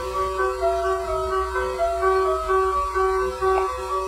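MuseNet's synthesized piano playing a MIDI piece from the beginning: a quick repeating pattern of notes over a held lower note. This opening is the user's uploaded intro, which precedes the AI-generated continuation.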